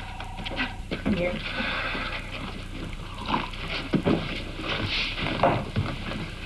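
Soft voices and movement sounds, with a short steady electronic tone in the first second.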